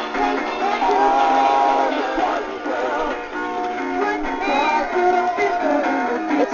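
Animatronic singing fish toy playing its recorded song through its small built-in speaker: a sung melody over thin accompaniment, with no bass.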